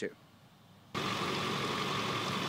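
Near silence for about a second, then a steady rushing noise with a faint steady hum that starts suddenly.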